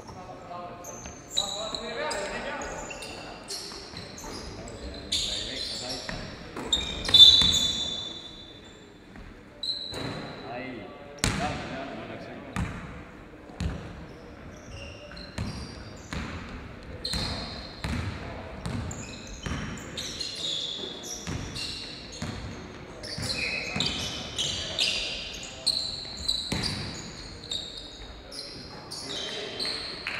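Basketball game sounds: the ball bouncing on a gym floor in irregular thuds, sneakers squeaking on the court, and players calling out. About seven seconds in, a sharp, loud squeak is the loudest moment.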